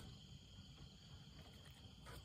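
Near silence: faint outdoor background with a thin, steady high tone.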